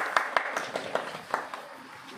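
A small group of people clapping by hand, a short scattered applause that thins out and stops about a second and a half in.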